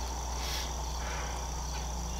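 Steady chirring of crickets, with a low steady hum underneath and a brief soft hiss about half a second in.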